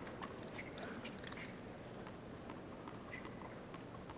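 Faint background noise with a scattered handful of light clicks and ticks, with no clear pitched or rhythmic sound.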